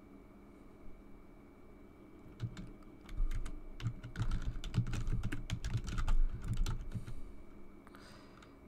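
Typing on a computer keyboard: after a quiet start, a quick run of keystrokes begins about two and a half seconds in and stops shortly before the end.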